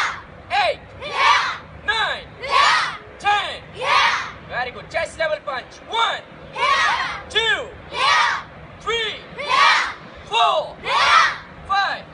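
A large group of children shouting together in a steady drill rhythm, a short loud shout about every second, each rising and falling in pitch, in time with their unison taekwondo punches.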